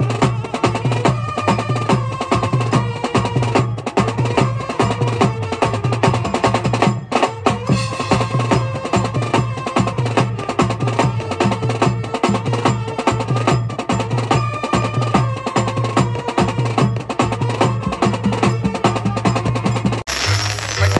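Koliwada brass band playing: a drum kit of steel-shelled drums and a cymbal beats a steady, dense rhythm under a pitched melody line.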